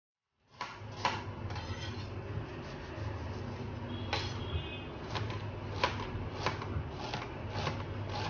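Chef's knife cutting a red onion on a stainless steel chopping board: sharp, irregular knocks of the blade striking the steel, coming roughly every half second to second in the second half, over a low steady hum.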